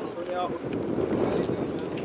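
Wind noise on the microphone, with a brief snatch of a person's voice about half a second in.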